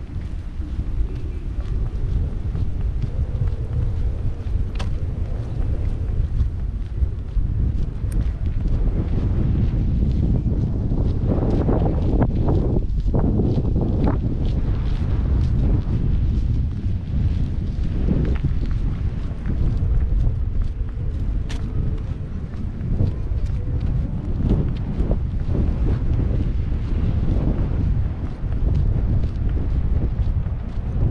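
Wind buffeting the camera microphone: a steady low rumble, with a few faint ticks.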